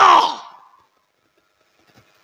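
A man's voice, amplified through a microphone, trails off at the end of a phrase with a falling pitch. Its echo fades out within the first second, followed by near silence.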